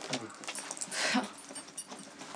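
A couple kissing: breathy sounds and short murmured hums through the kiss.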